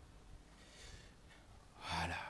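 A man's faint breathing into a handheld microphone, with a louder intake of breath near the end.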